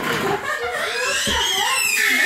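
Small children's high-pitched vocalizing, with a drawn-out squeal that rises in pitch about a second in.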